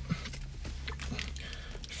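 Faint rustling and scraping of hands handling and starting to open a cardboard mailing box, over a low steady hum.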